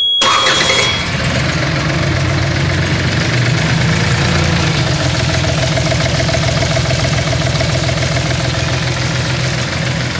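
Yanmar D36 diesel outboard motor starting: it turns over and catches within about a second, then settles into a steady idle. A steady high beep sounds over the start and stops about a second in.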